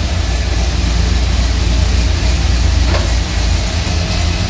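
ATI Max Duty T400 automatic transmission spinning on a transmission dyno, running steadily with a deep hum.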